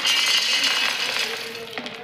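Peanuts pouring off a woven bamboo winnowing tray into a steel mixer-grinder jar: a dense rattle of nuts hitting the metal, thinning out in the second half as the pour slows.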